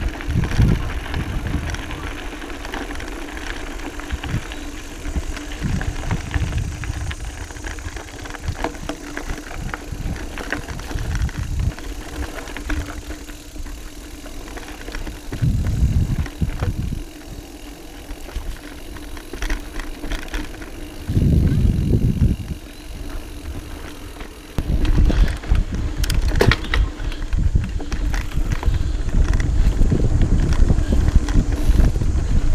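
Mountain bike rolling along a dirt singletrack trail: tyre noise with scattered knocks and rattles from the bike over bumps. Gusts of wind buffet the microphone, strongest about halfway through and in the last few seconds.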